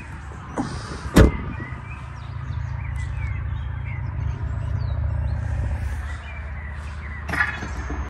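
A single sharp knock about a second in, over a low steady rumble, with faint bird chirps in the middle.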